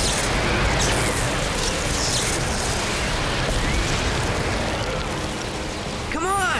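Cartoon action sound effect: a loud, continuous rumbling rush of noise with a few faint whooshing sweeps.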